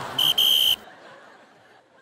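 A pea whistle blown in two shrill blasts, a short one and then a longer one of about half a second, on one steady high pitch: the instructor calling the squad to order.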